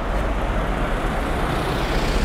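Road traffic: a car going by on the road, a steady rush of tyre and engine noise with a low rumble.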